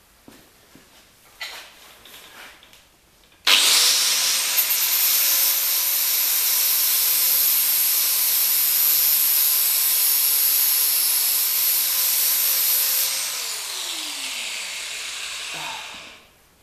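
Angle grinder with a flap disc grinding paint off steel down to bare metal: it starts suddenly about three and a half seconds in after a few faint handling knocks and runs steadily under load. Near the end it is switched off and winds down with a falling whine.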